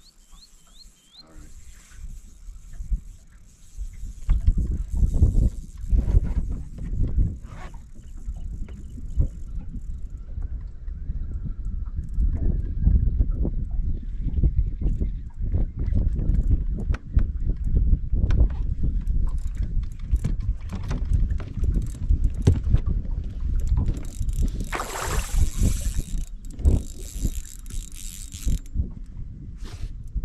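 Wind buffeting a camera microphone on an open boat, an irregular low rumble that starts about four seconds in. Near the end come two short bursts of hiss.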